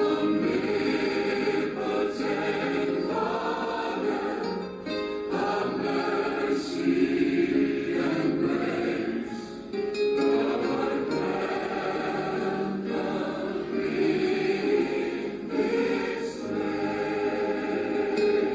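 Voices singing a worship song in church, with instrumental accompaniment.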